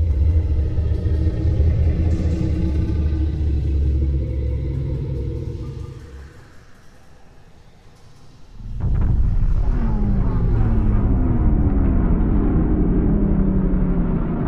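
Deep cinematic rumble sound design for about six seconds that fades into a lull. About nine seconds in, another deep rumble comes in suddenly, with a run of falling synthesized tones over it.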